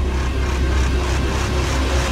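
Dramatic background score: a loud, steady low drone with a dense wash of sound above it.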